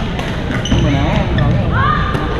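Badminton rackets striking a shuttlecock with sharp cracks, sneakers squeaking on the gym floor near the end, and players' voices, all echoing in a large sports hall.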